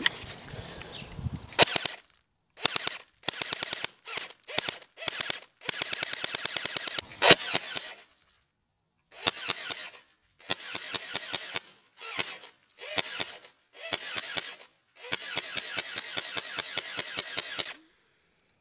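Airsoft gun fired at close range in rapid bursts, each a fast string of sharp cracks, with BBs striking an iPod Touch's glass screen and shattering it. The bursts begin about two seconds in and repeat with short silent gaps between them.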